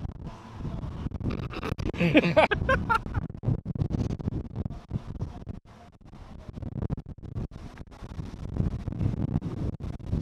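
Wind buffeting the microphone in gusts, with a brief muffled vocal sound, like a short murmur, about two seconds in.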